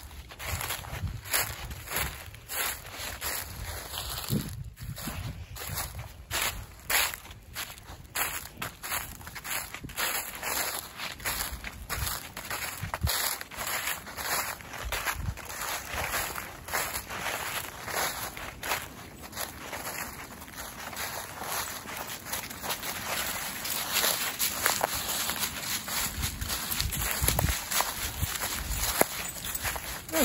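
Footsteps crunching through a thick layer of dry fallen leaves at a walking pace, with a steady crackle from step to step.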